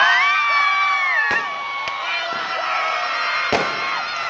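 A group of young men cheering and shouting together in celebration, long held whoops overlapping, with a few sharp cracks in between.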